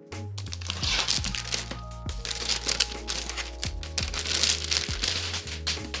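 Plastic wrapping crinkling continuously as it is pulled off a laptop, over background music.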